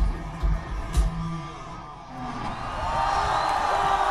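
A live band's last bars: a kick drum beating about twice a second over a held bass note, stopping about a second and a half in. After a brief lull, a large crowd cheers, whoops and whistles, growing louder toward the end.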